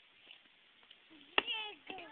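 A single sharp knock about one and a half seconds in, followed right away by a short high-pitched wordless vocal cry from a young child, with another brief sound of voice at the end.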